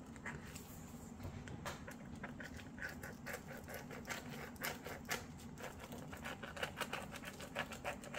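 Thick marker pen scratching and squeaking across plastic holographic window film as it is drawn around the edge of a silicone inlay, in many short, irregular strokes.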